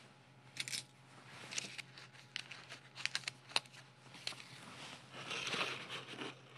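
Faint rustling and scattered small clicks of paper and corrugated cardboard being handled as a paper fastener is pushed through a paper star, a corrugated-paper rosette and a corrugated-paper hat, with a longer rustle near the end.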